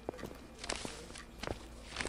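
Quiet classroom ambience: scattered light knocks and a brief rustle about two thirds of a second in, over a faint steady hum.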